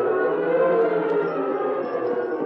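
Orchestral music bridge between scenes: a long sustained chord with slight swells in pitch, easing off a little near the end.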